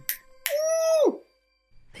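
A high voice calling a single 'woo', held steady for about half a second and then falling off, over a faint sustained musical tone.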